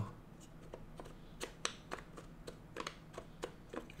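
Wooden sliding-bar puzzle box being handled: fingers turn the box and push at its wooden bars, giving faint, irregular wooden clicks and taps.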